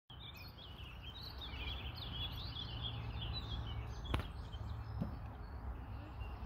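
Songbirds chirping and trilling over and over in the trees, over a low steady rumble, with one sharp click about four seconds in.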